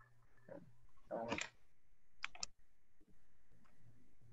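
Faint room tone with a short soft noise about a second in, then two quick sharp clicks about a fifth of a second apart a little past the middle.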